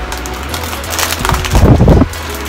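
Plastic bag and packaging crinkling and rustling as grocery packs are handled, growing into a loud, close rustle in the last half second.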